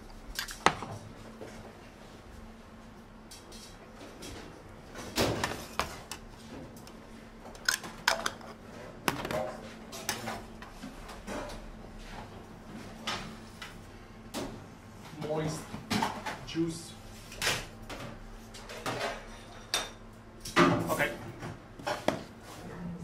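Restaurant kitchen clatter: scattered clinks and knocks of plates, pans and cutlery over a steady low hum.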